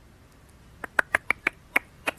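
A quick run of about six sharp clicks at a computer, starting about a second in and spaced a fraction of a second apart.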